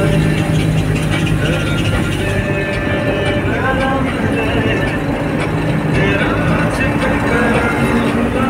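Engine and road noise heard from inside the cabin of a moving vehicle, with a person's voice over it.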